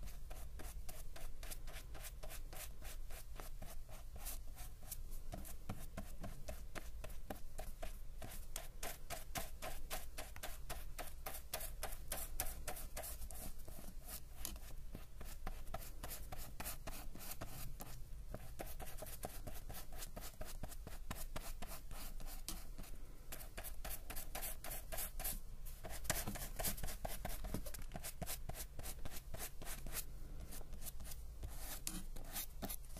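Small paintbrush dabbing and stroking wet paint on paper, very close to the microphone: a continuous run of soft scratchy brush strokes, several a second.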